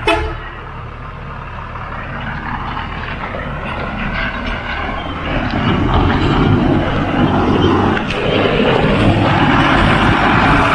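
Tanker truck engine running as the truck approaches on a dirt road, its rumble growing louder from about halfway through as it draws alongside.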